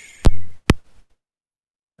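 Two sharp computer-mouse clicks about half a second apart, the first louder.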